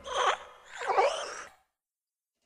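Cartoon sound effects of the animated jointed desk lamp in a Pixar-style logo intro: two short springy squeaks with wavering pitch as the lamp moves, then the sound cuts off suddenly about three-quarters of the way in.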